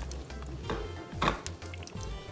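A plastic spoon stirring thick chowder in a metal saucepan, with two soft knocks of the spoon against the pot.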